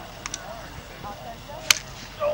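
Two light clacks and then, near the end, a single sharp, loud crack of a hard strike in lacrosse play, over faint shouting from players on the field.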